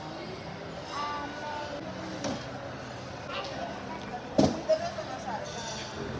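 Shop background of faint voices and faint music, with one sharp knock about four and a half seconds in.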